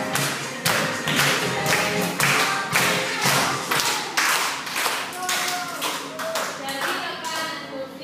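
Hands clapping in a steady beat, about two claps a second, over music. Near the end the clapping turns uneven and dies away.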